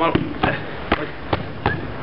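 A series of five sharp knocks, about two a second, evenly spaced, after a short spoken word.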